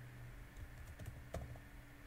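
Faint, scattered keystrokes on a computer keyboard as a word is typed, a handful of separate clicks.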